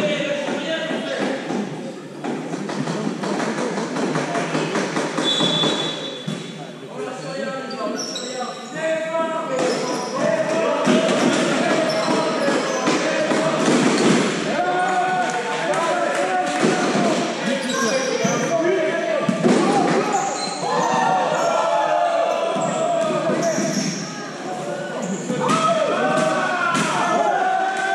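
A handball bouncing on a sports-hall floor and players shouting, echoing in the large hall.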